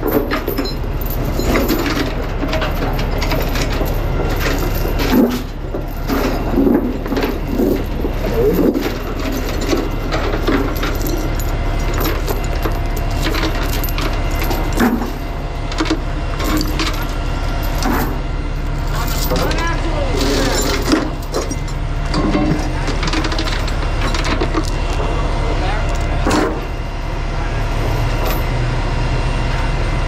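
Heavy rusty steel tie-down chains being pulled from a steel storage box, clinking and rattling against metal and the wooden deck in irregular clanks, over the steady low running of an idling truck engine.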